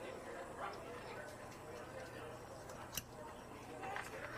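Faint, indistinct background voices over a low steady hum, with one sharp click about three seconds in.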